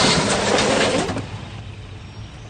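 A car rushing into a parking space with engine and tyre noise, ending abruptly about a second in with a collision with another car.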